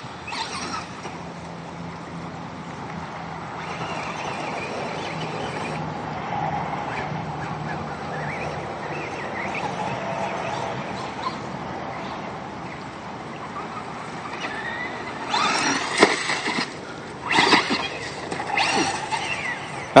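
Small radio-controlled truck driving over dirt and rocks: a faint, drifting motor whine over a steady rushing background, turning to louder revving with a sharp knock in the last few seconds as the truck comes close.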